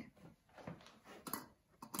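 Quiet handling sounds: an egg set down on a tabletop cutting mat and an empty glass mason jar picked up, giving a few soft knocks.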